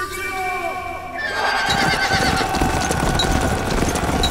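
A horse neighs at the start, then a cavalry charge: many horses gallop with a dense clatter of hooves, and men shout over it.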